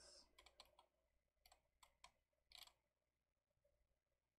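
Near silence, with faint, scattered computer mouse clicks in the first three seconds as history steps are selected.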